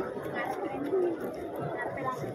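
Background chatter of a crowd on foot: several voices talking at once, none of them close or loud.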